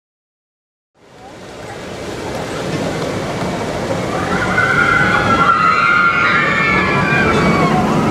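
Outdoor theme-park ambience at a roller coaster, fading in about a second in: a steady rushing wash with overlapping voices, some high and drawn out, growing over the second half.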